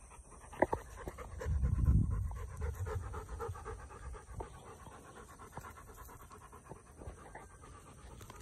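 Wet retriever dogs panting quickly and evenly after swimming, with a brief low rumble about two seconds in.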